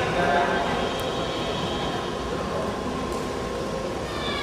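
Steady rumbling background noise of a large gymnasium hall, with faint voices from seated onlookers, mostly in the first half-second.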